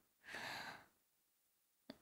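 A woman's breathy sigh, one soft exhale about half a second long near the start, then near silence.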